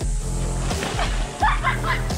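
Background music with a steady bass, over the wet slap and slosh of a body diving onto soapy, water-soaked plastic sheeting and sliding along it on a homemade slip-and-slide.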